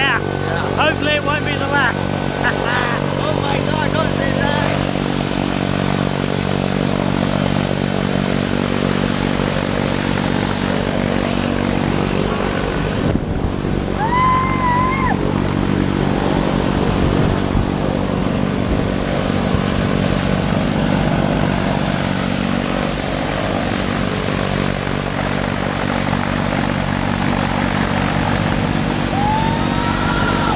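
Propeller aircraft's turboprop engine running steadily nearby: a constant low drone with a high, even whine above it.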